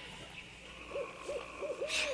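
A man imitating a monkey: four short hooting 'ooh' calls in quick succession starting about a second in, each rising and falling in pitch. A brief scratchy sound comes just at the end.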